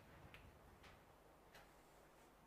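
Near silence: faint room tone with a few light, irregular ticks, roughly one every half second.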